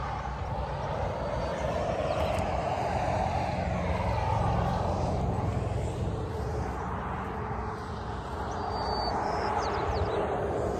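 Highway traffic going by: a steady rush of tyre and engine noise that swells a few seconds in, eases off and builds again near the end.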